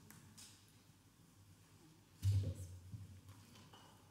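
Quiet church room tone with a few faint rustles as the choir takes its places, and one dull, low thump a little over two seconds in, like a knock against wooden furnishings or a microphone.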